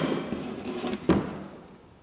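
Knocks and clunks of metal parts being handled on a steel paint pressure-pot lid, the loudest about a second in, then fading to quiet.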